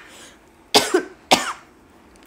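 A woman coughing twice, short sharp coughs about half a second apart, near the middle.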